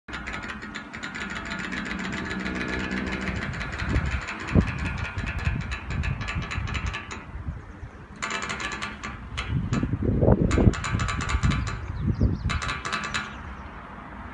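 Flagpole halyard running through its pulley as the flag is hauled up: a rapid, squeaky clicking, continuous for the first half and then in several short spurts as the hauling comes in pulls. Gusts of wind rumble on the microphone.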